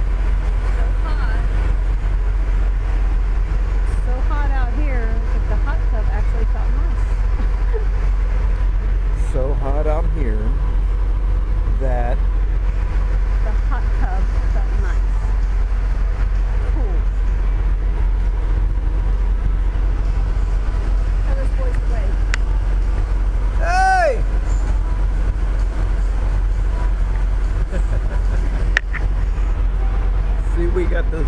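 A steady low rumble runs throughout, with faint voices in the background. Near the end a brief pitched tone rises and then falls.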